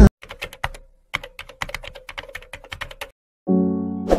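Rapid, irregular clicking of keys being typed on a computer keyboard, about a dozen or more clicks over some three seconds. The clicking stops, and music starts shortly before the end.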